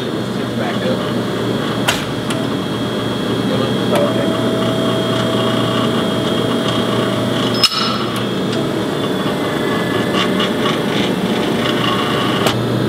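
Electric-hydraulic tube bender's pump running steadily with a low hum while it bends chromoly tube. A steady tone joins about a third of the way in and stops with a sharp click about two-thirds through, and there are a few lighter clicks besides.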